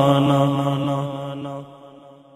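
A voice holding the long final sung note of an Urdu devotional salaam, a steady unaccompanied tone that fades away towards the end.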